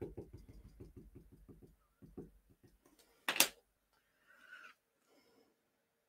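A small felt ink pad dabbed rapidly onto a clear photopolymer stamp on an acrylic block, a quick run of soft taps, several a second, fading out after a second and a half. A single sharp click a little over three seconds in, then a brief faint rustle.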